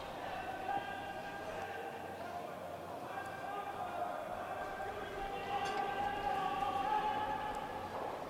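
Faint voices in a curling rink's hall, with long held calls that rise and fall in pitch throughout, over the hall's background.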